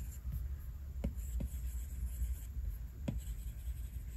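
Apple Pencil tip tapping and stroking on an iPad's glass screen: a few faint taps about a second in, shortly after, and near the three-second mark, over a low steady hum.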